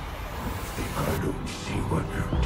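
Live concert audio at a transition: a steady low electronic drone with crowd noise, and a rising whoosh sweep building through the first second, the lead-in to a pulsing synth intro.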